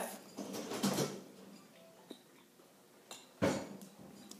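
Mostly quiet room with a brief, soft voice sound, like a murmured "mm", about half a second in, and a single soft thump about three and a half seconds in.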